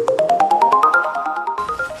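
An editing transition sound effect: a fast run of short, ringing pitched notes, about a dozen a second, climbing steadily in pitch.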